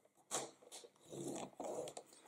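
Paper trimmer's scoring blade carriage being pushed along its rail, pressing a crease into cardstock: a click about a third of a second in, then a scraping slide in the second half.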